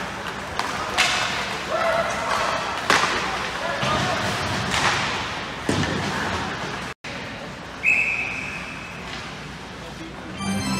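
Ice hockey play in an indoor rink: several sharp cracks of sticks and puck striking boards and glass over spectators' voices. About eight seconds in, a steady shrill whistle sounds for about a second, the referee stopping play.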